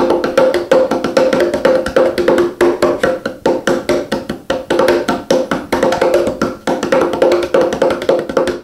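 A Meinl make-your-own bongo cajon played by hand. It is a quick, steady run of slaps, several a second, alternating between a lower and a higher ringing tone from its two playing surfaces.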